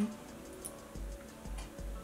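Faint small plastic clicks and taps as a liquid concealer's wand applicator is handled and put back into its tube among other makeup tubes, with a few soft low thumps.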